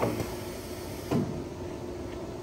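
Steady hum of a plastic-part spin-cutting, boring and leak-testing machine, with one short mechanical clunk about a second in, which comes as the completed part is readied for unloading.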